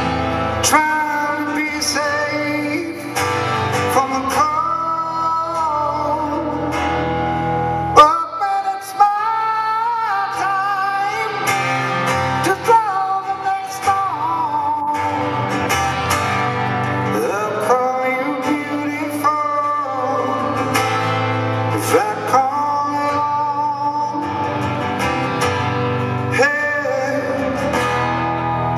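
Live male rock vocalist singing a slow song, accompanied by acoustic guitar.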